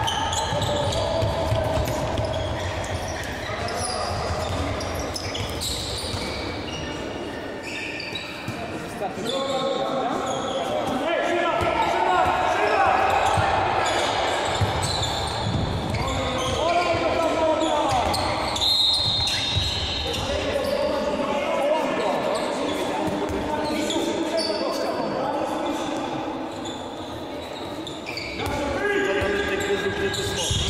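Handball game in a sports hall: players shouting and calling to each other over the ball bouncing on the court floor, all echoing in the large hall.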